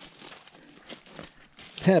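Irregular crunching and crackling of footsteps on gravel ground cover, with a man's voice starting again near the end.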